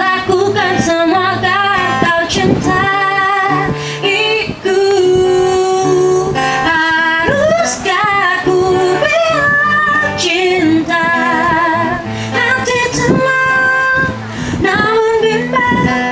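A woman singing a held, wavering melody line over her own strummed acoustic guitar, heard through a microphone.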